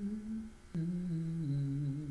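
A man humming with closed lips in two short phrases. The second comes after a sharp click about a second in and steps down in pitch.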